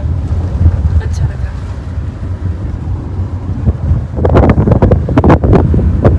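Steady low rumble of a moving car heard from inside the cabin, with wind buffeting the microphone. Voices come in about four seconds in.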